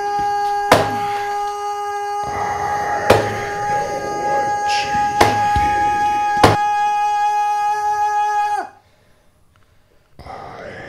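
Horror-film sound design: a steady, siren-like chord of held tones is struck four times by sharp thuds. About three-quarters of the way through the tone bends down in pitch and cuts off suddenly.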